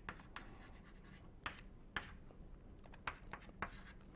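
Chalk writing on a chalkboard: faint, irregular short scratchy strokes and taps as an equation is written out.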